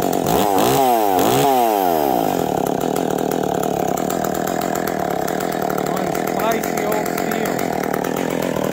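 Stihl 020AV two-stroke top-handle chainsaw running at idle, revved up and back down twice about a second in, then holding a steady idle.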